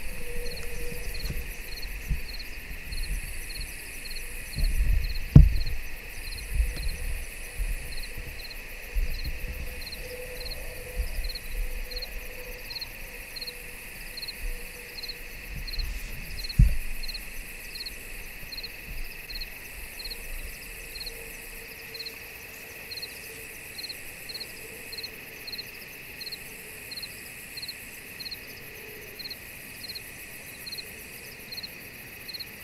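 Crickets chirping in a steady, even rhythm over a continuous high insect drone. Low thumps and rumbles from the camera being handled and moved come through, the loudest about five seconds in and another about sixteen seconds in.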